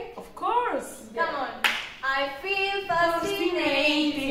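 A woman singing a pop melody unaccompanied, with sliding vocal notes early on and a couple of sharp handclaps between one and two seconds in.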